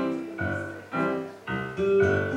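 Solo electric stage piano playing chords struck in a steady rhythm, about two a second.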